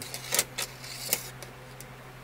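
A few light, sharp clicks of a small screwdriver's metal tip against the rails and point rail of a model railway turnout as the points are pushed over by hand, over a faint steady low hum.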